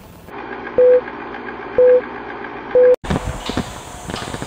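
A car's electronic warning chime beeps three times, about once a second, each beep a short steady tone over the low hum of the cabin. The sound breaks off abruptly near the end.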